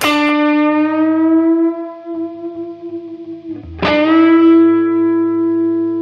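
Electric guitar playing a note bent up a whole step from D to E and held. About four seconds in the note is picked again, bent up to E and left to sustain.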